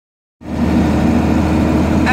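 Truck engine running steadily as a low drone while driving, heard from inside the cab; the sound starts about half a second in.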